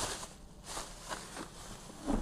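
Faint rustling and crinkling of bubble-wrap plastic as a box is pulled out of it.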